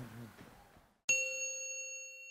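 The tail of a monk's chanted Pali blessing fades out, then after a moment of dead silence a single bright bell-like chime strikes about a second in and rings on, slowly fading: the outro logo sting.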